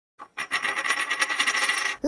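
Coin-flip sound effect: a metal coin spinning and rattling, with a click and then a fast run of metallic ticks over a steady ringing tone that cuts off suddenly at the end.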